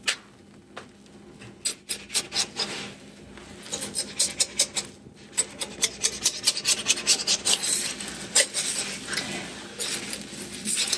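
A spatula scraping and prying thin egg wraps off an electric griddle in short rasping strokes. The strokes begin about two seconds in and come faster after that. The egg is sticking to the griddle even though it was greased with tallow.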